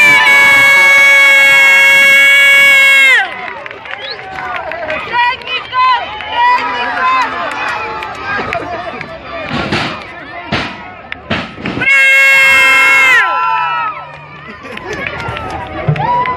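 Two long, loud air-horn blasts, the first lasting about three seconds and the second starting about twelve seconds in, each holding one steady note that sags in pitch as it dies. Between them, crowd shouting and a few sharp slaps or claps.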